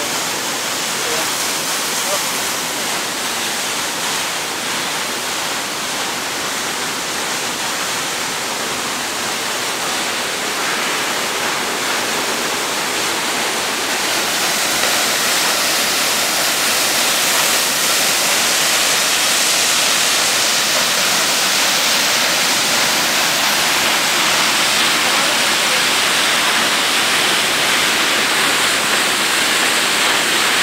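Waterfall pouring onto rocks: a steady, dense rush of falling water that grows louder about halfway through.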